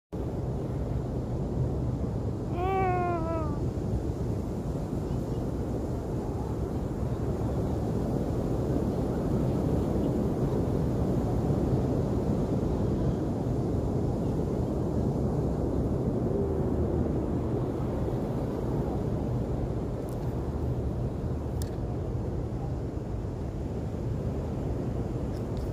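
Steady rush of wind and surf on an open beach. A single short wavering call with an animal-like pitch comes about three seconds in, a fainter one about midway, and a sharp click near the end.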